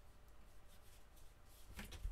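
Faint rustle of cardstock as a paper cube card is folded flat and laid on the mat, with one short, louder rustle near the end.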